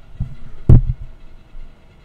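A single sharp click with a low thump under it, about two-thirds of a second in.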